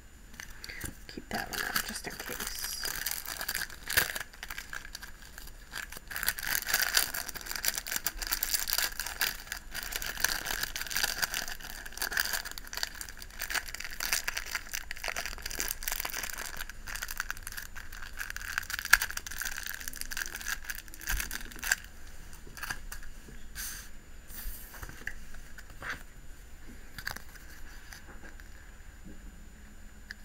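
Crinkling and rustling of clear plastic nail-sticker sheets being handled and leafed through, with scattered small clicks and taps. It is densest for most of the stretch and thins to sparse clicks near the end.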